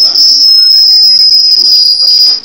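Microphone feedback from the PA: a loud, steady, high-pitched squeal that sinks slightly in pitch.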